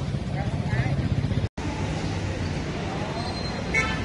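Busy street ambience: a steady rumble of traffic and vehicle engines with people talking in the background. The sound drops out for an instant about a second and a half in, and a brief sharp pitched sound comes near the end.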